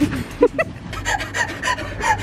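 A metal railing gate shut on a finger: a couple of sharp sounds about half a second in, followed by quick, pained breaths and gasps.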